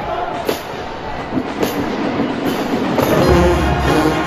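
Marching band playing: sharp drum hits come about once a second. About three seconds in, the brass section, sousaphones, trumpets and saxophones, comes in louder with held chords over heavy bass.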